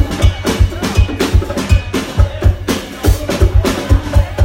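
A live band plays loudly, with a drum kit's kick drum pounding several times a second under snare and cymbal hits, and keyboard and electric guitar on top.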